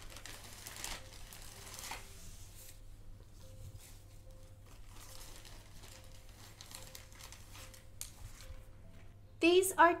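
Clear plastic zip-lock bag crinkling as it is opened and handled, loudest in the first two seconds, then quieter, scattered rustles as items are pulled out.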